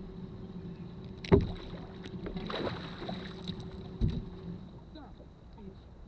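Sharp knock on a bass boat, the loudest sound, about a second in, then a short rush of water splashing and a second knock about four seconds in, over a steady low motor hum that fades out.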